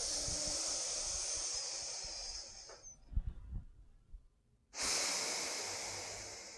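A woman breathing forcefully through one nostril at a time in alternate-nostril breathing. One long breathy hiss of about three seconds slowly fades out. After a short pause with a few soft thumps, a second long breath through the other nostril begins near the end.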